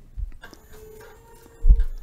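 Grundfos Smart Digital DDA diaphragm dosing pump starting up in 25% slow mode: a faint steady motor whine begins about half a second in, and a short low thump comes near the end. The slowed suction stroke is meant to prevent the dosed chemical from off-gassing.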